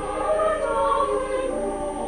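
Mixed choir of women's and men's voices singing together in several parts, holding sustained notes that move from chord to chord.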